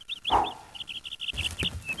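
A canary chirping in quick runs of short, high peeps, with a brief crinkle of aluminium foil about a third of a second in.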